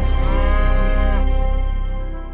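A cow mooing once, a call that rises and then drops off just over a second in, over steady background music.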